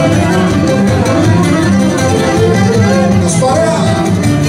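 Live Cretan folk dance music from a band: a bowed string melody over strummed acoustic guitar and a drum kit, playing steadily and loud.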